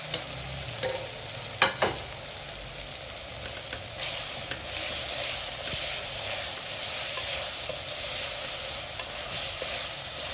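Fried bitter gourd slices and onion-tomato masala sizzling in an aluminium pot as a wooden spoon stirs them, with a few sharp knocks of the spoon against the pot in the first two seconds. The sizzling gets louder from about four seconds in.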